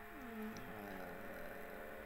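A pause in speech with a steady low electrical hum, and a faint pitched sound gliding down in pitch during the first second.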